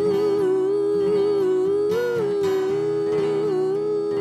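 Wordless vocal harmony held as long, sustained notes by two voices moving together, with a slight lift in pitch about two seconds in, over acoustic guitar.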